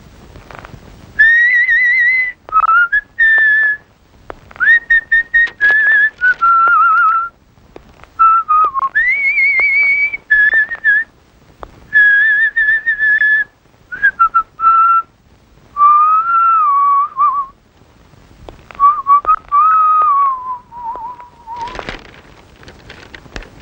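A person whistling a wandering tune in short phrases with pauses between them. The pitch rises and falls, and the tune sinks lower near the end.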